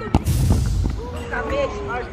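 A football struck hard in a penalty kick: a sharp thump, followed by about half a second of low rumbling noise. Near the end comes a long, drawn-out shout.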